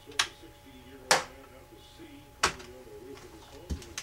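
Four sharp clicks and knocks, about a second apart with the second the loudest, from a thin metal hard drive platter and the electromagnet coil being handled and set back in place between launches.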